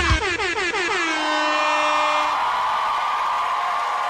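A dance track ends on a final hit, followed by an air-horn sound effect that drops in pitch and then holds one steady tone for about two seconds. An audience cheering and screaming swells in about a second in and carries on.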